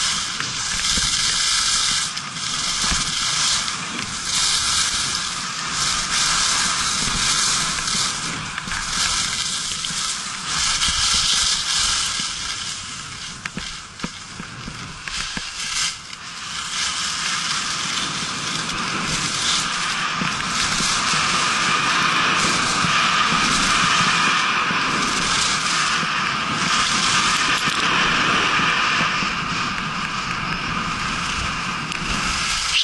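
Skis scraping and carving over hard-packed snow on a fast downhill run. The hiss swells about once a second through a series of turns, eases briefly midway, then runs steadier and a little louder.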